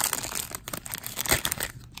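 Gold foil wrapper of a 1993 Bowman baseball card pack crinkling and tearing as it is pulled open, a run of irregular crackles and snaps.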